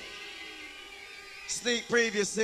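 The rave music cuts off, leaving a faint low background for about a second and a half, then a man's voice, the MC on the microphone, starts calling out near the end.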